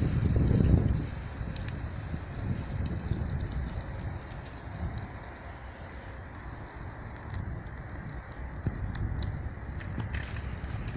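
Wind buffeting a phone's microphone: a heavy low rumble in the first second, then a softer, uneven rush of outdoor wind noise with occasional faint ticks.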